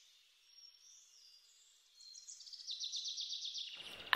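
Faint background bird sounds: a few thin high chirps, then a fast, even, high-pitched trill that fades in about halfway through and grows louder.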